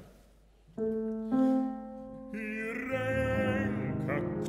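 A grand piano plays, with chords struck about a second in and again shortly after. From about two and a half seconds in, a bass-baritone starts singing a classical art song over the piano, with a clear vibrato.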